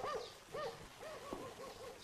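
A dove or pigeon cooing faintly in a run of short, rising-and-falling notes.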